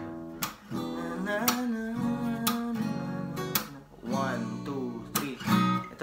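Acoustic guitar strumming seventh chords in a reggae beat pattern: sharp chopped strokes roughly once a second between ringing chords.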